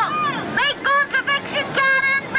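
Children shouting and crying out in high-pitched, broken-off calls, some falling in pitch.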